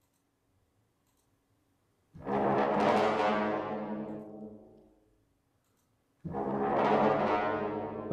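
Sampled orchestral brass phrase from the Sonokinetic Espressivo library, played twice from the keyboard. The first starts about two seconds in and fades away over about three seconds. The second starts about six seconds in and is still sounding at the end.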